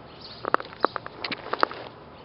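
A quick, irregular run of sharp clicks and taps, about eight of them bunched in the middle second or so, over a steady faint outdoor background.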